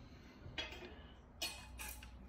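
A few faint, short clicks over a low steady hum: handling noise as a cut piece of aluminium profile is held and turned in the hand.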